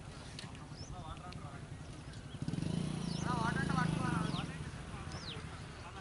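Open-air ambience with small birds chirping in short falling notes. A distant wavering call, voice- or animal-like, sounds briefly about a second in and again more loudly between about three and four and a half seconds, over a low hum that swells at the same time.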